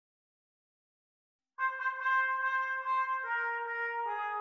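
A solo trumpet enters about one and a half seconds in, opening a brass ensemble arrangement: a few short tongued notes, then a held note that steps down to a slightly lower held note.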